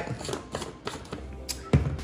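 A few light clicks and taps of a metal spoon against a glass seasoning jar and bowl while dry seasoning is scooped, with faint music underneath.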